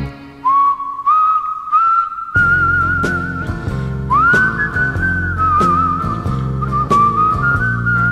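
A single whistler whistles the melody of a 1957 pop ballad, a clear sliding tune. Light bass and guitar accompaniment comes in about two and a half seconds in.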